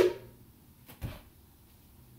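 Near quiet room tone broken by one soft, short knock about a second in.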